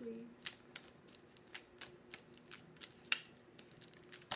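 A tarot deck being shuffled by hand so that one card can be drawn: a string of irregular soft card clicks and snaps.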